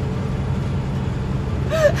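Steady low drone of a truck's engine and road noise, heard from inside the cab while driving, with a short laugh near the end.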